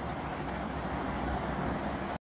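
Steady background noise: an even hiss with a low hum underneath, holding level throughout.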